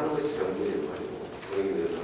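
Only speech: a man speaking Korean into a microphone.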